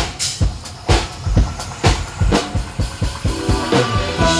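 A live rock band opening a song: a drum kit beat at about two hits a second, with bass and guitar notes coming in near the end.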